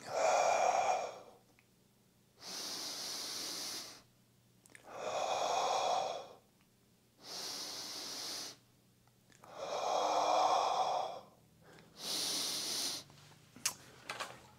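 A man taking slow, deep breaths in and out, one breath every two to two and a half seconds, with every other breath louder. A couple of light knocks near the end as a dumbbell is set down on the floor.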